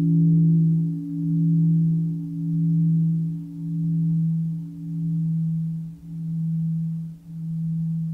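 A low Buddhist bell ringing on after being struck, its tone swelling and ebbing about once a second as it slowly dies away. This is the bell sounded between the verses of a Plum Village bell-invitation chant.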